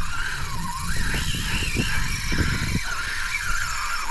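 Spinning reel's drag singing as a tarpon strips line, a continuous whine that wavers up and down in pitch with the fish's run, on a drag the angler judges set too loose. Low, uneven buffeting noise runs underneath.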